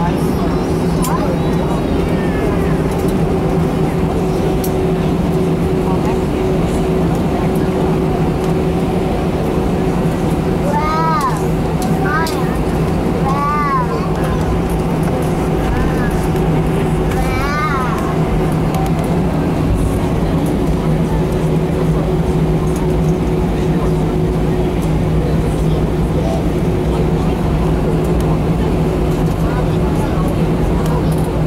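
Airbus A319 cabin noise while taxiing: the jet engines' steady hum and drone at taxi power, heard from inside the cabin, with several short vocal sounds from people in the cabin partway through.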